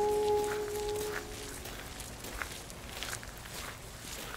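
Footsteps on a gravel path, faint and irregular, while a few held music notes fade out in the first second or so.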